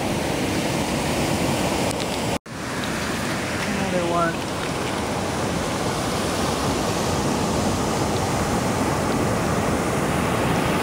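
Steady wash of ocean surf and wind on a cobble beach. The sound cuts out for an instant about two and a half seconds in.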